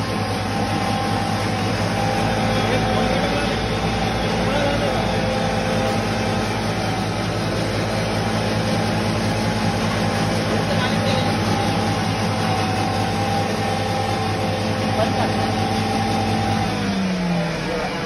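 Electric foam cutter machine running while foam is fed into its hopper: a steady motor hum with a dense rattling, shredding noise over it. Near the end the low hum falls in pitch and drops away as the motor slows.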